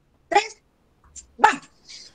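A girl's voice calling out the end of a countdown: two short, loud words about a second apart, the last one 'va!'.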